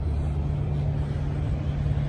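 Idling diesel semi-truck engine: a steady low hum with an even drone.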